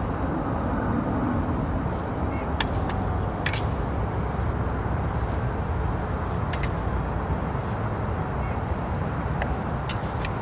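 Smallsword blades clicking together in a few short, sharp contacts, single touches and quick pairs a few seconds apart, over a steady low background rumble.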